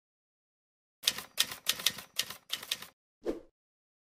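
Keyboard typing sound effect: about eight quick key clicks, one for each letter of a word typed into a search box. A single duller click follows about a second later, as of the search being entered.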